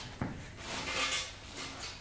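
Metal tools clattering and scraping as someone rummages through them, starting suddenly, swelling in the middle and fading toward the end.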